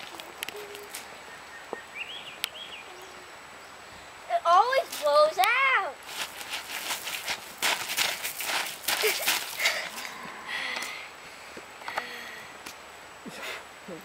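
A child's loud, high-pitched cries, several quick rising-and-falling calls about four seconds in, followed by a few seconds of crunching footsteps on gravel as he runs.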